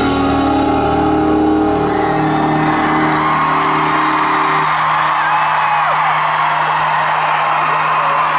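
A live band holds the final chord of a song, which stops about halfway through, leaving one low note ringing. Over it an arena crowd cheers and whoops, growing louder, with a few whistles.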